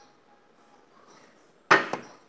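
Faint room tone, then one sudden loud clatter near the end, a sharp knock or bang that dies away quickly.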